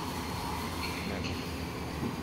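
Steady low background rumble with faint high-pitched tones above it and no clear single event.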